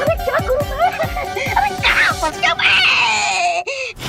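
A man wailing and crying out in a run of short rising-and-falling cries over background music. Near the end the music swells and then cuts off suddenly.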